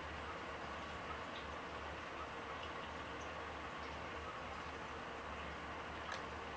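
Steady room tone: an even hiss with a constant low hum.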